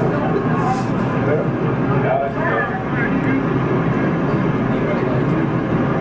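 Steady low rumbling noise from an old outdoor news film's soundtrack played over room speakers, with a few murmured voices.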